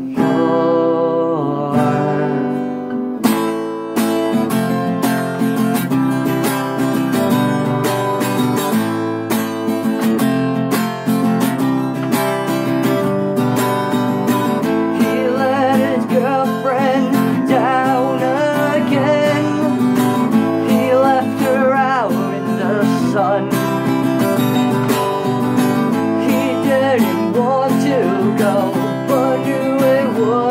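Acoustic guitar strummed steadily through an instrumental passage, with a voice singing over it from about halfway.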